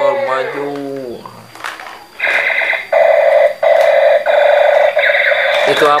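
Electronic sound effects from a light-up Ultraman action figure's small built-in speaker: a falling electronic tone in the first second, then from about two seconds in a quick series of short buzzing electronic phrases with brief gaps between them.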